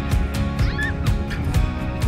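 Background music with a steady beat and held notes.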